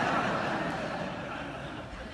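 Audience laughing in response to a joke, the laughter fading away over the two seconds.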